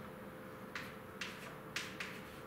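Chalk tapping against a blackboard while drawing: three sharp clicks about half a second apart, the last the loudest.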